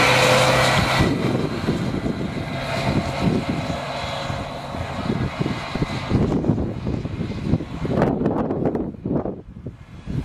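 Double-decker bus's diesel engine loud as the bus passes close, dropping off sharply about a second in as it pulls away up the lane. After that a lower rumble continues, with uneven gusts of wind on the microphone that grow choppier toward the end.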